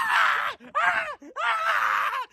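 Two people shrieking with laughter in mock fright, in three long high-pitched shrieks.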